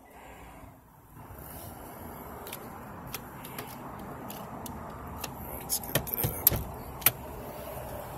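Handling and movement noise from someone shifting about inside a pickup's cab: scattered clicks and knocks over a steady hiss, with a few louder thumps about six and seven seconds in.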